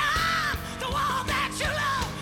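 A live blues-rock band plays with bass and drums while a woman belts long, wavering sung notes with vibrato into a microphone, with no clear words.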